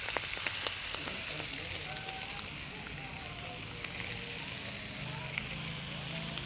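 Steaks and sausages sizzling steadily on a hot flat-top griddle. A few sharp clicks of metal tongs against the plate come in the first second or so.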